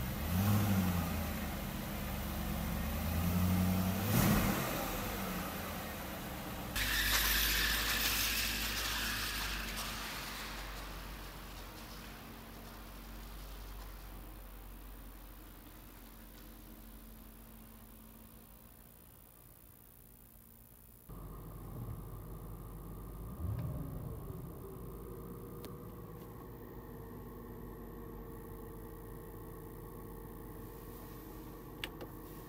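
BMW 540i 4.4-litre V8 revved up and back down twice, then pulling away and fading as it drives off. After that the engine is heard from inside the cabin, running steadily with one more rev about two-thirds of the way through.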